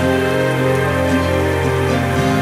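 Steady rain with slow, mellow music of held chords playing over it.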